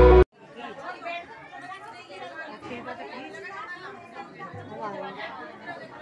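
Overlapping chatter of a crowd of guests, many people talking at once with no single voice standing out. Loud music cuts off suddenly just after the start.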